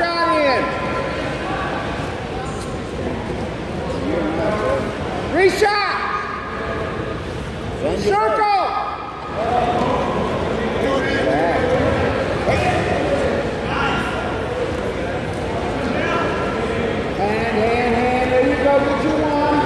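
Shouting voices over the hubbub of a large gym hall. Two louder yells come about five and eight seconds in, with scattered calls throughout.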